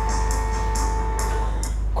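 The closing bars of a pop ballad's recorded backing track: two held notes over a light, regular high percussion beat, with the notes ending about three-quarters of the way through and the music fading out.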